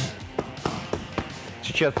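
Punches landing on leather focus mitts: a quick run of sharp slaps, a few a second.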